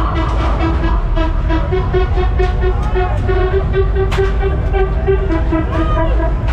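Loud fairground din at a Break Dance ride: several steady pitched tones, one of them pulsing, over a heavy low rumble, with scattered sharp clicks.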